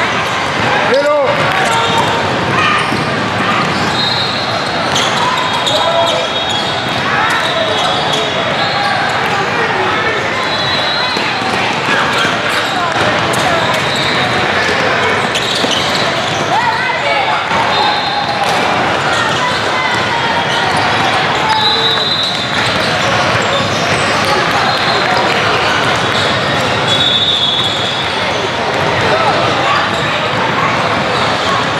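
Basketball game in a large echoing hall: the ball bouncing and dribbling on a hardwood court, short high sneaker squeaks now and then, and players and spectators calling out over the steady din of other games.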